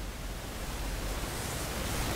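Steady, even hiss of background room noise, slowly rising a little in level.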